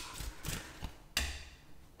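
Tarot cards handled: a few light taps as a card is drawn from the deck, and a short swish about a second in as it is laid down on the table.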